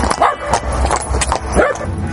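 A small dog yipping a few times, short rising-and-falling calls, over the irregular clatter of a freshly shod horse's iron shoes on cobblestones.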